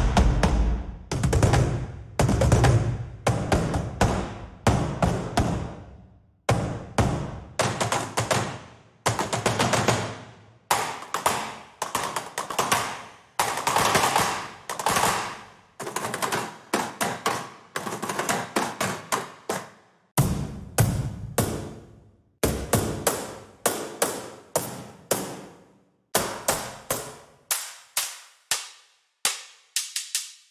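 Sampled cardboard-box percussion from Fracture Sounds' Box Factory library, its Aggressive patch: boxes struck with sticks, recorded in a concert hall. It is played as a long string of sharp, punchy hits, each with a short ringing decay. Deeper, heavier hits come in the first few seconds, then quicker flurries of lighter hits, broken by a few brief pauses.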